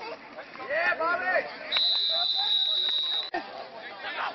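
A referee's whistle blown in one long, steady, shrill blast of about a second and a half, signalling the end of the play. It comes just after a burst of shouting.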